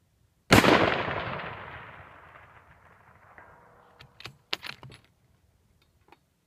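A single shot from a Georgia Precision 700 bolt-action rifle in .308, with a long echo rolling away over about three seconds. Near the end comes a quick run of sharp clicks and clacks.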